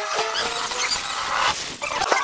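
Heavily distorted, effects-processed cartoon audio: a held, animal-like cry of a few steady pitches under a harsh high hiss, breaking off about one and a half seconds in.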